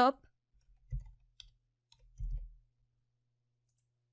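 Faint clicks of typing on a computer keyboard, with two dull low thumps about one and two seconds in.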